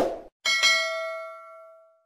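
Subscribe-button animation sound effect: a brief click, then a single bright bell ding about half a second in that rings out and fades over about a second and a half.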